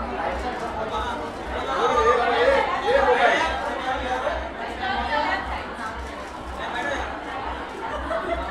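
Indistinct chatter of several people talking at once, with voices growing louder about two seconds in.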